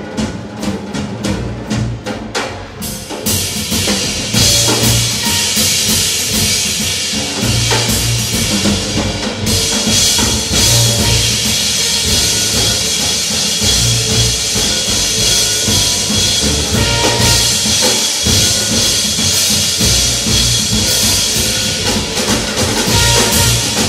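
A live jazz band playing: piano and double bass at first, then the drum kit comes in with cymbals about three seconds in and keeps a busy beat over the walking bass.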